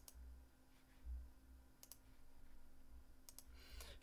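Near silence broken by a few faint computer mouse clicks: one near the middle and two close together near the end.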